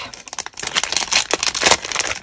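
Clear plastic packet crinkling as it is handled by hand: a dense run of sharp crackles that grows busier after about half a second.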